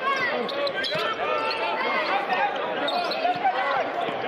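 Basketball dribbled on a hardwood court during live play, with voices in the background.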